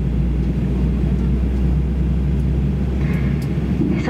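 Steady low rumble inside the cabin of a Boeing 737-800 airliner, the drone of the aircraft's engines and air-conditioning heard from a window seat.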